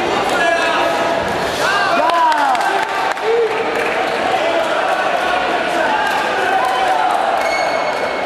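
Taekwondo sparring in a large sports hall: a steady hum of crowd voices, with scattered sharp knocks from foot and kick impacts and a few short squeaks early on.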